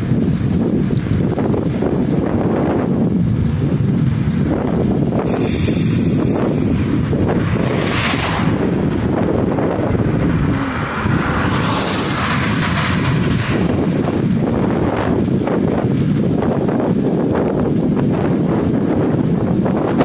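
Steady, loud wind rush buffeting the microphone of a camera carried on a bicycle coasting fast downhill on an asphalt road.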